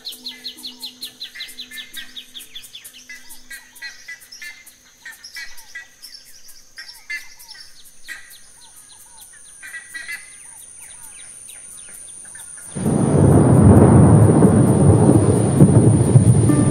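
Birds chirping in short repeated calls, with a falling trill at the start, over a steady high thin whine. About thirteen seconds in, a sudden loud low rumble of thunder takes over and keeps going.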